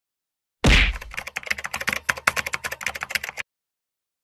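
Typing sound effect: a low thump, then a fast run of keyboard-like key clicks lasting about three seconds that cuts off suddenly.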